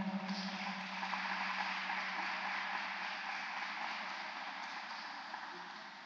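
Audience applauding, fading slowly toward the end.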